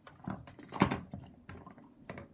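Hands rummaging among craft supplies on a tabletop: a string of light knocks and rustles, the loudest a sharp knock a little under a second in.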